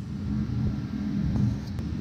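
Steady low rumble of background machinery with a faint hum, broken by a few faint light ticks.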